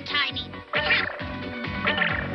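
A cartoon character's high-pitched voice crying out in short, wavering yelps over upbeat background music with a steady beat.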